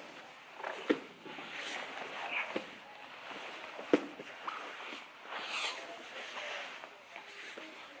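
Two grapplers in jiu-jitsu gis rolling and scrambling on foam mats: fabric rustling and scuffing, with two sharp thumps, one about a second in and one about four seconds in.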